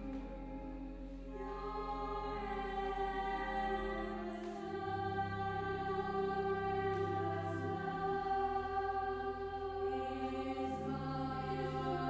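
A girl's solo treble voice singing a slow carol, coming in about a second in over held low accompaniment notes that change chord every few seconds.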